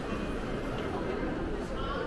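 Indistinct chatter of nearby shoppers over a steady background murmur.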